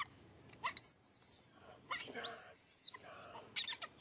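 Baby macaque screaming in distress while being grabbed by another monkey: two long, high-pitched, wavering screams, the first about a second in and the second about two seconds in. A short run of sharp clicks follows near the end.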